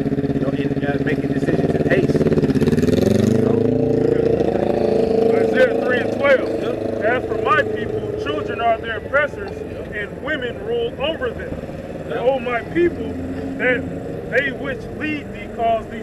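A motor vehicle's engine running nearby, then rising in pitch as it revs and pulls away about three seconds in, leaving lower street noise with scattered short sounds.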